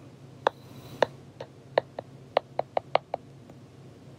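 Stylus tip tapping on a tablet's glass screen while handwriting a word: about ten short, sharp clicks at an uneven pace, coming quicker in the second half.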